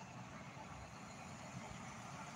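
Faint, steady low hum of a car idling, heard from inside the cabin.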